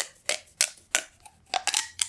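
Orange corrugated plastic pop tube fidget toy being pushed back in by hand, its ribbed segments snapping shut one after another as a string of about seven sharp, irregularly spaced clicks.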